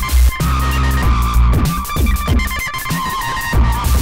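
Dave Smith Tempest analog drum machine beat run through an Elysia Karacter saturation and distortion unit: deep, distorted kick drums whose pitch falls after each hit, over a steady high synth tone. The Karacter's stereo link mode and secondary settings are being changed as it plays.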